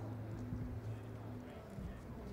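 Faint clip-clop of a racehorse's hooves as it is handled and shifts about, a few soft knocks over a low steady hum.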